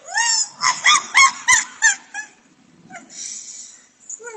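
A dog giving a quick run of short, high, rising yelps and whines that stop about two seconds in, followed by a faint rustling hiss near the end.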